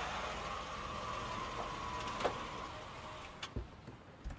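A car driving past on the street, its tyre and engine noise fading away, with a sharp click a little past two seconds in and a few soft low knocks near the end.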